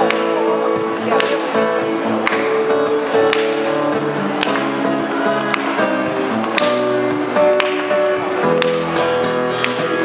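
Acoustic guitar strummed in an instrumental passage of a song, with a sharp accented stroke about once a second.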